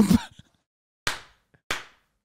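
A man's laugh trails off, then two short, sharp noisy bursts about a second and a second and a half later, each dying away quickly.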